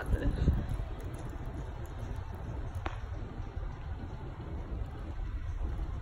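Low rumble and uneven thumps from a handheld phone microphone carried while walking, with a single sharp click about three seconds in.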